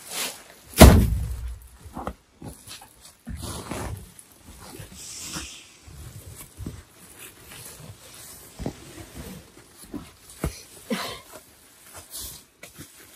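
Woven plastic sacks of rice being handled and tied shut: a heavy thump about a second in, then the rustle and scrape of the sack fabric and string, with scattered small knocks.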